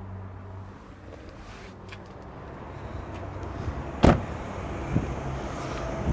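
A car door being shut, a single loud thump about four seconds in, with a smaller knock a second later, amid rustling handling noise. A low steady hum fades out early on.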